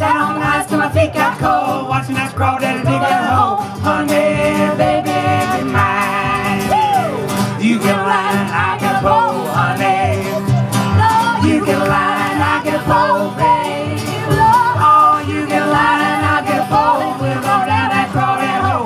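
Live acoustic band: plucked upright bass and acoustic guitar keeping a steady beat, with singing over them.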